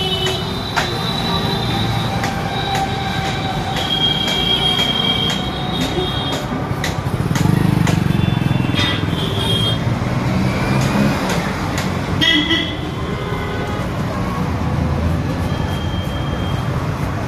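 Steady rumble of passing traffic with several short, high-pitched horn toots, and scattered light metallic clicks.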